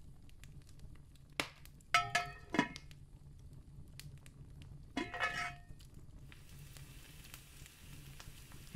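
Kitchen sound effects of cooking: a click, then two short clusters of ringing clinks from cookware being handled, then from about six seconds in a faint steady sizzle of meat starting to fry.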